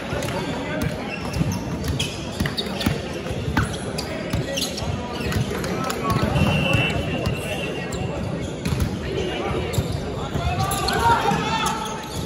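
Sports-hall sounds during a volleyball match: players' voices and calls over repeated thuds of volleyballs being hit and bouncing on the wooden court floor, echoing in a large hall.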